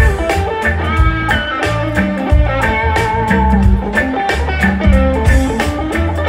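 Live reggae band playing without vocals: an electric guitar plays a melodic lead over bass and a drum kit keeping a steady beat.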